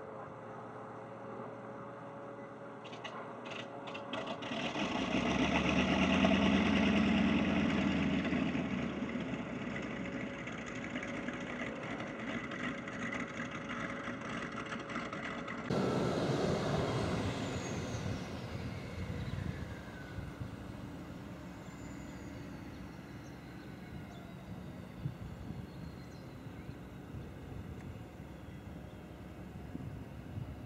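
Cessna 152's Lycoming O-235 four-cylinder engine heard from beside the runway as the plane passes, swelling to its loudest a few seconds in and then fading. About halfway through it sounds again suddenly at full power with a falling whine as the plane climbs away.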